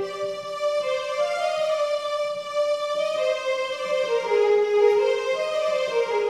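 Yamaha portable electronic keyboard playing a Carnatic melody as a single line of held notes, stepping from pitch to pitch with some notes sliding.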